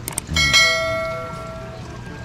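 Subscribe-button animation sound effect: two quick mouse clicks, then a notification bell chime that rings out and fades away over about a second and a half.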